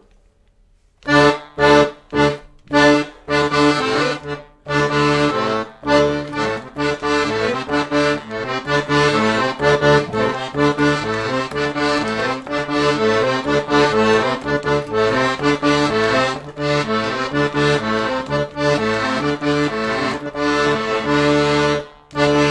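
Piano accordion playing a song's instrumental introduction: a few separate, punchy chords about a second in, then a steady rhythmic run of chords over bass notes.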